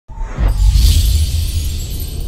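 Cinematic intro music sting: a deep bass drone that starts abruptly, with a loud, bright, noisy hit about half a second in that slowly fades.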